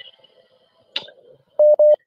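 Telephone call-line tone: two short, loud beeps of one steady pitch in quick succession near the end, after a faint click about a second in.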